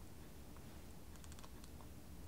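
Quiet room tone with a quick run of faint, light clicks a little past the middle, from the plastic prism goggles being handled and settled on the face.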